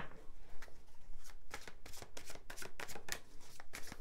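A deck of tarot cards being shuffled by hand: a rapid, irregular run of soft card-on-card clicks that grows denser after about a second.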